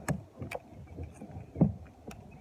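Handling knocks on a kayak: a couple of light clicks, then one louder, low thump about a second and a half in.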